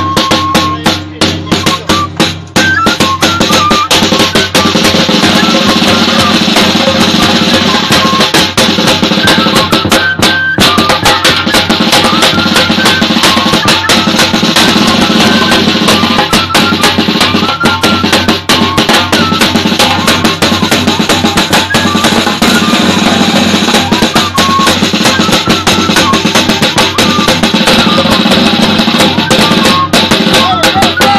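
Instrumental folk music of Santa Ana del Yacuma: a metal flute playing a wavering melody over a large bass drum and a smaller side drum beaten with sticks. The music is slightly softer for the first couple of seconds, then plays at full level.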